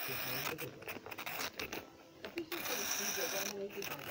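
Clockwork motor of a wind-up Capsule Plarail toy engine running while the engine is stuck in place on a plastic turntable, shaking slightly instead of moving. The sound is faint and uneven, cutting out briefly several times.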